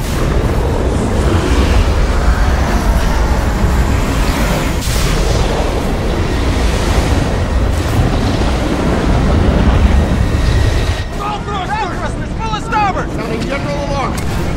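Film sound effect of a huge rogue ocean wave: a loud, deep rushing rumble of water that eases about eleven seconds in. Voices call out over it near the end.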